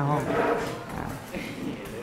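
A man's voice ending a word, then a lower stretch of indistinct noise from a classroom full of students, with no clear voice standing out.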